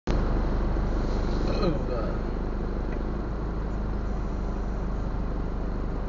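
Congested street traffic: a steady low rumble of idling engines. A short voice-like call comes about a second and a half in.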